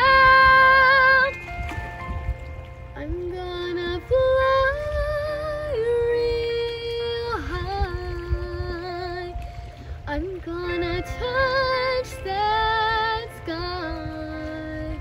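A young girl singing solo without clear words, holding long notes with vibrato and moving between them in several phrases.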